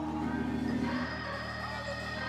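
Organ holding sustained chords, the chord shifting about a second in.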